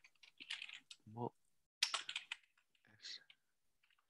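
Faint typing on a computer keyboard: a few short runs of keystrokes, with a brief murmur from a voice about a second in.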